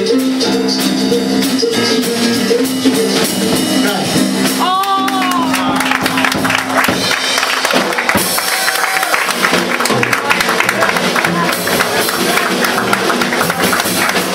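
Small live band jamming: electric guitar chords held over a drum kit, with a bending note about a third of the way in. The drumming and cymbals get busier from about halfway through.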